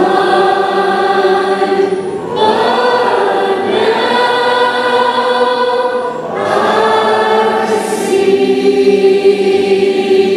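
Worship team of several voices singing a slow worship song together in long held phrases. New phrases begin about two and a half and six and a half seconds in.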